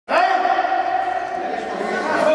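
Kendo kiai: a long, drawn-out shout held at a steady pitch from kendoka squaring off with shinai before striking, starting suddenly just after the beginning.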